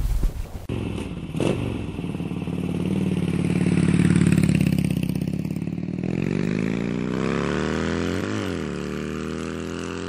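Harley-Davidson Dyna Street Bob's 103 cubic inch V-twin running, swelling up and easing back over a few seconds. A quick throttle blip rises and drops near the end.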